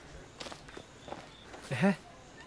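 Footsteps on a dirt path, a string of faint, irregular crunches. Near the end comes a brief sound of a man's voice, the loudest sound.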